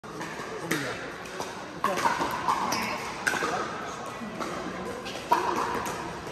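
Pickleball paddles hitting the ball on surrounding courts: about five sharp pops at irregular intervals, the loudest near the end. Under them runs the chatter of players' voices in a large indoor hall.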